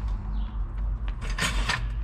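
Off-road floor jack carrying a loaded Dana 60 front axle being rolled and shoved on its wheels, a steady low rumble with a few sharp knocks about one and a half seconds in.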